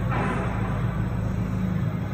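Steady machine hum of a running heat tunnel: a low, unchanging drone with an even rushing noise over it.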